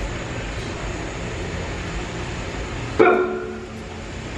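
Steady rumble and hiss of background noise, with a short, loud call about three seconds in.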